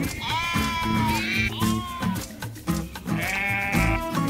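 Sheep bleating about three times (a long call near the start, a short one about halfway, a higher one near the end) over background music with steady low notes.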